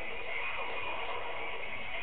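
Steady low hiss of background noise with no distinct sound events.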